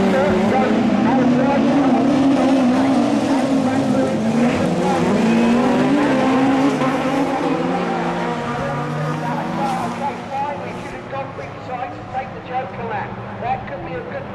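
Rallycross cars racing past, their engines revving hard and changing pitch as they accelerate and shift. The engines are loud for the first half, then fade to a quieter, uneven engine noise as the cars move away.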